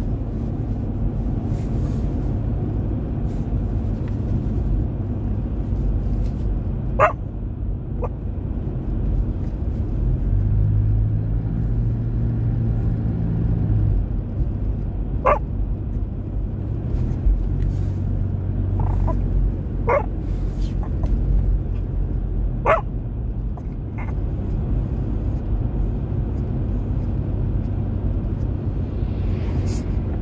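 Steady low road and engine rumble of a car driving, heard inside the cabin, with a short droning hum partway through. A few short, sharp, high sounds cut in about five times over the rumble.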